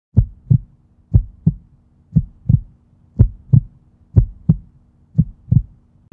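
Heartbeat sound effect: six lub-dub double thumps, about one a second, over a faint steady low hum.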